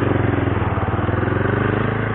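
Motorstar Xplorer Z200S's 200 cc single-cylinder four-stroke engine running at a steady, even pitch while the motorcycle is ridden along a street.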